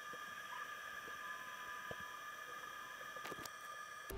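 Faint steady high-pitched electrical whine over a low hiss, with a few faint clicks.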